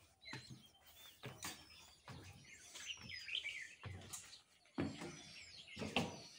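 Several birds chirping and calling, quiet short whistles and slurred notes overlapping throughout, with soft footsteps on wooden stairs thudding about once a second.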